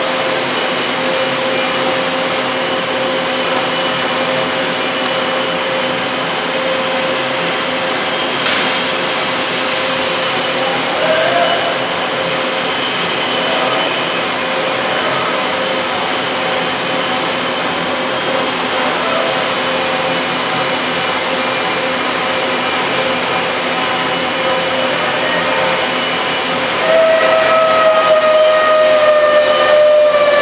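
Rod threading machine running, its rotating die head cutting a thread on a stationary steel rod, with a steady whine over a constant hiss. A brief higher hiss comes about eight seconds in, and near the end a louder whine sets in and slowly falls in pitch.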